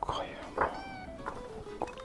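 Soft background music with paper handling as the pages of a stamp-rally booklet are turned and pressed flat. About halfway through, a short high cry with a slight fall in pitch.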